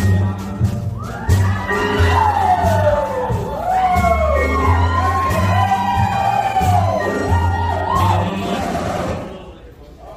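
Stage show music with a deep, rhythmic bass line, with the audience whooping and cheering over it; the sound falls away sharply near the end.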